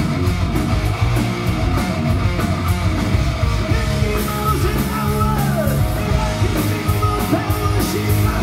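Hard rock band playing loud and live: distorted electric guitars, bass and a drum kit with regular cymbal hits, and a male voice singing.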